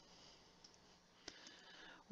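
Near silence with two faint computer mouse clicks, the second and sharper one a little over a second in.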